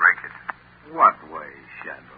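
Speech in an old radio drama broadcast recording, with a steady low hum under it.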